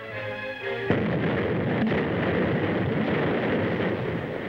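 Film-score music that about a second in is swamped by a sudden, dense din of battle sound effects: a continuous barrage of artillery and gunfire that runs on under the music.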